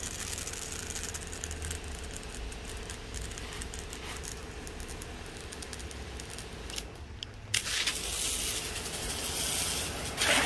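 Battery-powered spray cart's pump running steadily with a low hum while a water stream shoots from the hose nozzle. About seven and a half seconds in, a louder hiss starts as the spray is turned onto the concrete close by.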